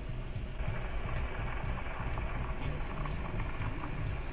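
Steady low rumble of a car running, heard from inside the cabin.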